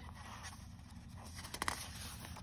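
Quiet pause of faint room hiss and low hum, with a few soft clicks about a second and a half in as the picture-book page starts to be handled for turning.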